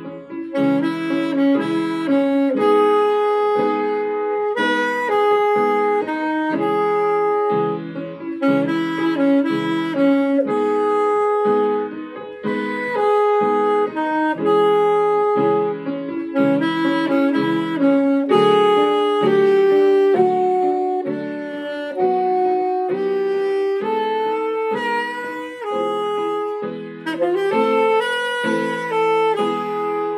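Alto saxophone playing a slow, somber melody of long held notes over grand piano chords struck in a steady pulse.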